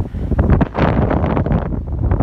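Strong gusting wind buffeting a phone's microphone, a loud rumbling rush that surges and dips in gusts.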